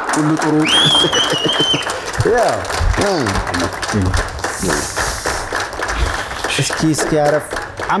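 Studio audience applauding, with men talking and greeting each other over the clapping.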